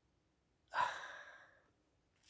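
A man's single audible sigh close to the microphone, starting sharply under a second in and fading away over about a second.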